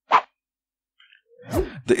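A single short pop just after the start, the loudest sound here, followed by silence.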